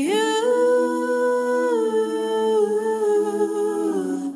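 A singer holds the word "you" as one long, steady sung note, a cappella. The pitch steps down slightly about halfway through, and the note stops just after the end.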